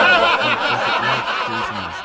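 Several people laughing at once, starting suddenly and tailing off over about two seconds.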